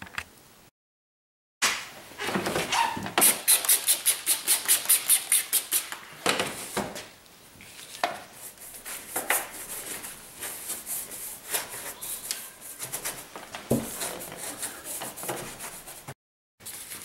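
A detailing brush scrubbing wet, soapy panels under a car's hood in quick back-and-forth strokes, fastest at about eight a second a few seconds in, then slower and more uneven. The sound drops out completely for about a second near the start.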